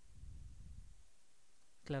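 Quiet microphone room tone with a soft low rumble in the first second, then a man starts speaking right at the end.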